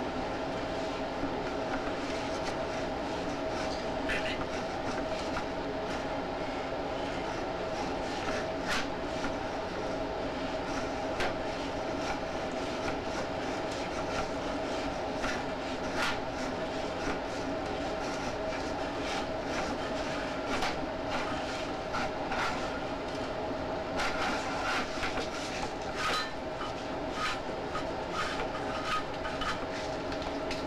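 Drain inspection camera's push cable being fed down a roof drain stack: a steady hum with frequent clicks and rattles as the camera head and cable knock along the pipe, the rattles coming thicker in the second half.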